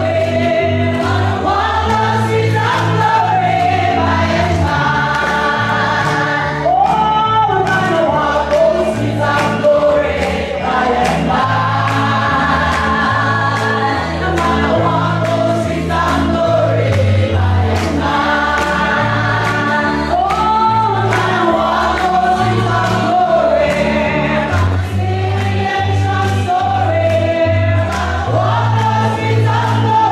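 A church congregation singing a gospel song together over a bass line, with a steady beat of claps or percussion running under it.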